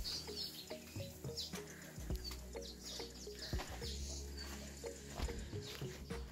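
Birds chirping and calling, with many short high chirps. An on-and-off low rumble on the microphone runs underneath.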